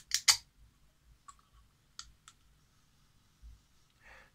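Aluminium can of Hell Strong Cola energy drink being opened and handled: two sharp clicks of the pull-tab just after the start, the second the loudest, then a few faint ticks as the can is lifted.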